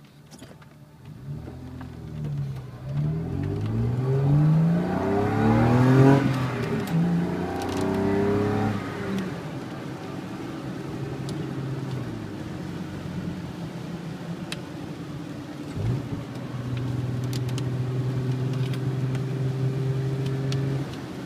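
BMW M50NV straight-six, fitted with a lightweight flywheel, heard from inside the cabin as it revs up through the gears. Its pitch climbs, falls back at each shift and peaks loudest about six seconds in. For the second half it settles into a steady drone at cruising speed, with a brief dip near sixteen seconds.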